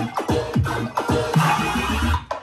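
Colour bass (melodic dubstep) drop: deep bass notes and quick falling pitch swoops in a choppy, stop-start rhythm, over layered synth chords.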